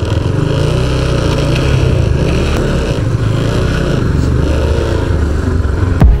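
Motorcycle engine running steadily at low speed as the bike is ridden slowly to a parking spot.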